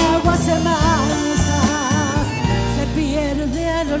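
Live chamamé band playing an instrumental passage between sung lines: an accordion melody over guitars, bass and percussion.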